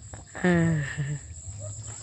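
Crickets or other insects chirring in a steady, high-pitched drone. A person's voice calls out briefly, with a falling pitch, about half a second in, and is the loudest sound.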